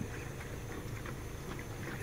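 A steady, low background rumble with a faint hiss and no distinct events.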